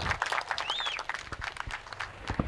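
Scattered applause from a small group of people clapping, as dense irregular claps, with a brief high rising-and-falling chirp about two-thirds of a second in.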